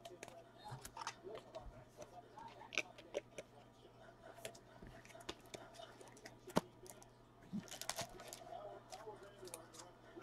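Faint, scattered clicks and plastic rustles of trading cards being handled and slid into penny sleeves and top loaders, with one sharper click a little past halfway.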